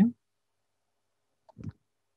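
The end of a man's word over a video-call line, cut off sharply just after the start, then dead silence broken by one short, faint sound about one and a half seconds in.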